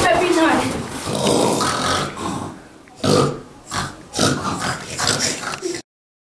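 Children's voices making loud grunting vocal noises in several short bursts, not clear words, with the sound cutting off abruptly near the end.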